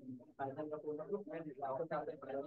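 A man talking in continuous lecture speech.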